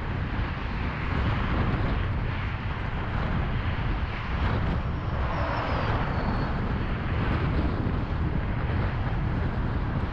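Steady road noise of a car cruising on a freeway: a continuous low rumble of tyres and engine with the rushing wash of traffic passing alongside.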